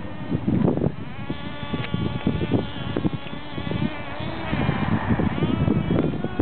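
Motors of several 1/16-scale RC racing cars buzzing with a high-pitched, mosquito-like whine, the pitch rising and falling as they accelerate and slow around the dirt track.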